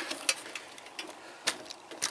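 Scattered light clicks and taps from a homemade metal exoskeleton's frame and foot plates as the wearer shifts his weight in it, the sharpest about one and a half seconds in.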